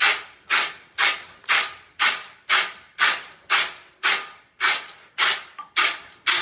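Fried almonds rattling in a perforated steel colander as it is shaken and tossed in a steady rhythm, about two tosses a second, each a quick rattling swish.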